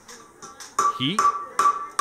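A hammer striking metal in quick succession, about five blows a second, each with a short ringing note. The strikes begin a little under a second in.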